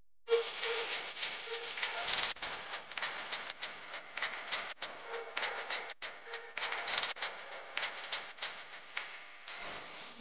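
Chopped vegetables and spices sizzling and crackling in hot oil in a kadai, with sharp clicks and scrapes of a spoon stirring through them. It starts abruptly about a third of a second in.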